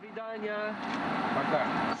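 Brief voices saying goodbye over the steady hum of the space station's cabin ventilation fans.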